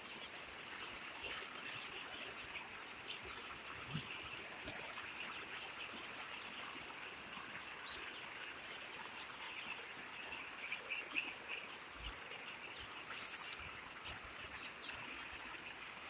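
Faint trickling and dripping of rainwater with plastic tarpaulin sheeting crackling now and then, loudest in two short rustles about five seconds in and about thirteen seconds in; faint peeping of young chicks runs underneath.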